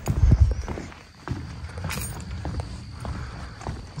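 Footsteps walking on composite boardwalk decking, a series of light irregular knocks, with a louder low thump right at the start.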